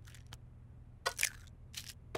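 Eggs being cracked into a bowl: a few short, faint cracks and clicks of eggshell, as animation sound effects.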